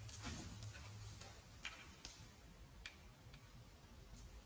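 A few faint, irregular light clicks and ticks, spaced unevenly over quiet room tone.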